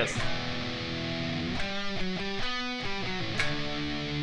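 Electric guitar in standard tuning playing a held power chord at the tenth fret of the low E string, then a short run of changing notes, then another sustained chord.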